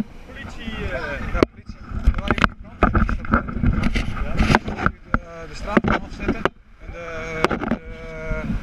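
Brief indistinct voices over rustling and several sharp knocks from clothing and gear handling a body-worn camera, with a low rumble of wind on the microphone.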